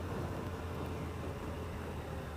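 Yamaha FJR1300's inline-four engine running while riding at low speed, a steady low hum with even road and wind noise.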